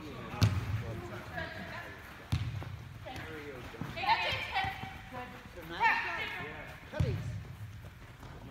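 Soccer ball kicked on indoor turf: three sharp thuds spread across several seconds, the first about half a second in, another just past two seconds and the last near the end.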